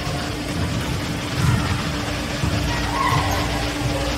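Gymnasium room noise: a steady hum and a low, shifting rumble, with no ball contact or clear voices.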